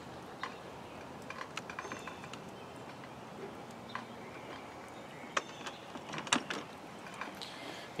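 A few small clicks and handling knocks over a faint quiet background, from a nozzle being pulled out of a pressure washer wand's quick-connect coupler and another snapped in. The pressure washer is not spraying.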